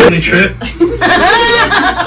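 A man chuckling into a hand-held microphone, with a few voiced, half-spoken sounds.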